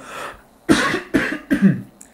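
A man coughing three times in quick succession into his cupped hands.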